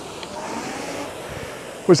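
Concept2 RowErg's air-resistance flywheel whooshing steadily through one drive stroke at a low stroke rate, with a faint hum rising and then falling in pitch. A spoken word comes in at the very end.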